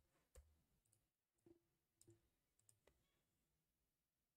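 Near silence broken by about six faint, short clicks from a computer keyboard and mouse as a word is typed and a menu is clicked open.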